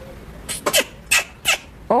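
Western lowland gorilla kissing a TV screen: a quick run of about five short, sharp kissing smacks within about a second.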